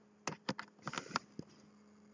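Handling noise from a battery-powered recording device being picked up and moved: a quick run of about eight sharp clicks and knocks in the first second and a half, over a faint steady hum.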